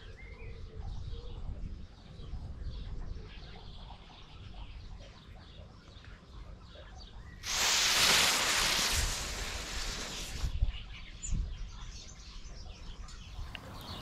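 Two clip-on fireworks igniters fired together: a sudden loud hiss of burning that starts about halfway in and lasts about three seconds. Both igniters light on the one cue despite five-metre extension wires.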